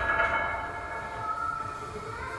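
Ringing of a metal barbell and its weight plates dying away over the first half second after a sharp clank, leaving faint steady tones.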